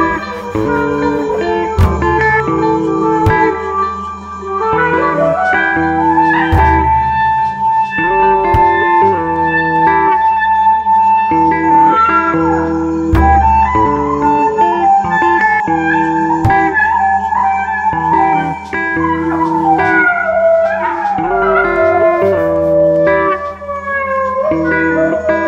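Folk-jazz fusion ensemble music: plucked guitars over a plucked double-bass line, with a melody that slides up into a long held note and later falls away in downward slides.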